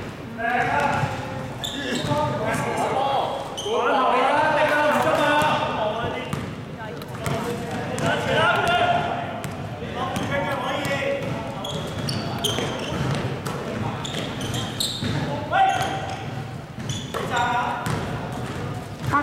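Players and people on the bench calling out and shouting during play, with a basketball being dribbled on the court floor, its bounces coming as sharp knocks among the voices.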